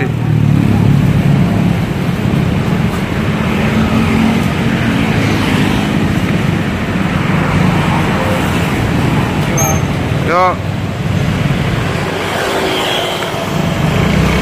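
Urban street traffic at close range: car and motorcycle engines running steadily. A brief voice-like call sounds about ten seconds in.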